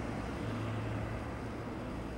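Steady low background hum, with no distinct events.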